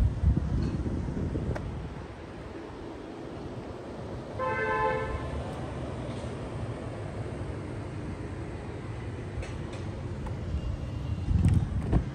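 Street ambience with low wind and handling rumble on a handheld microphone, loudest near the start and again near the end. About four seconds in, a vehicle horn sounds once for about a second, a steady two-note toot.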